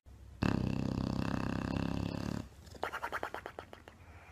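English bulldog snoring in its sleep: a long rasping snore of about two seconds, then a shorter fluttering breath of quick pulses.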